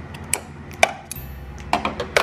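Scissors snipping sewing thread: two sharp snips in the first second, the second one louder, then a few lighter clicks near the end.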